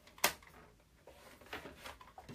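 A single sharp click about a quarter second in, then faint handling noises, as cardstock is scored on a paper trimmer.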